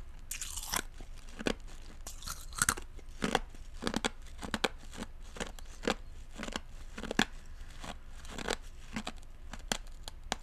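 Close-miked wet mouth sounds of chewing with the lips mostly closed. A longer wet sound near the start is followed by sharp, irregular clicks and smacks, roughly one or two a second.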